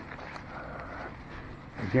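Faint outdoor background noise with no engine running, then a man's voice starting near the end.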